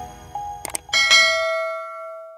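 Subscribe-button animation sound effects over a short jingle: a couple of melody notes, two quick mouse clicks about two-thirds of a second in, then a bright bell chime about a second in that rings on and slowly fades.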